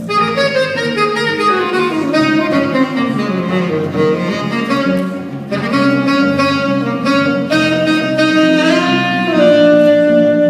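Saxophone and electric bass guitar playing a jazz duo live: the saxophone plays a run of melody notes over a walking bass line and holds one long note near the end.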